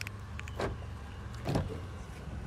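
Car engine idling with a steady low hum, with two short knocks about a second apart as the car door is handled.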